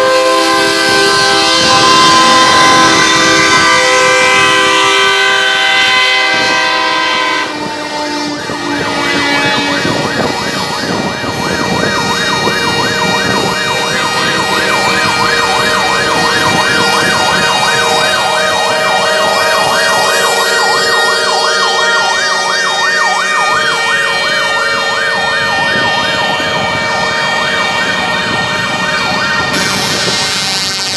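Truck air horns sounding long, held chords together, then from about eight seconds in a siren yelping in a fast, steady up-and-down warble over continuing horn tones.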